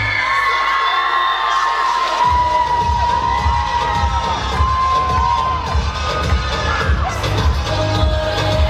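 Audience cheering and screaming in high voices over the dance music, many long cries overlapping. The music's bass beat drops out at the start and comes back in about two seconds in.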